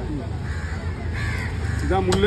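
A crow cawing over a steady low rumble of background traffic.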